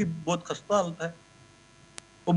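A man's voice for about the first second, then a pause in which only a faint steady electrical hum is left, ending with a small click.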